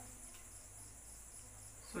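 Faint background noise: a steady high-pitched chirring that pulses evenly a few times a second, over a low steady hum.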